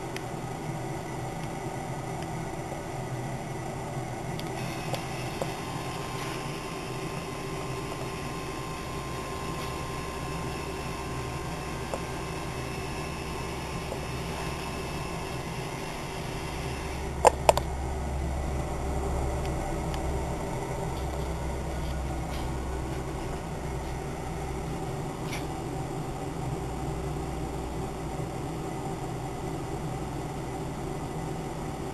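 Giles Chesterfried commercial fryer running with a steady fan-like hum and whir. A low rumble comes in and grows louder about halfway through, with two sharp clicks just after it.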